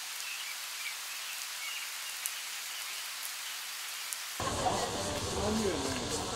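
Light rain falling: a steady soft hiss with a few faint drip ticks. It cuts off about four seconds in, giving way to music with a voice.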